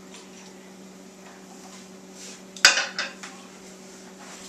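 Shot glass set down hard on a counter after the shot: one sharp glassy clack with a short ring about two and a half seconds in, then a lighter knock.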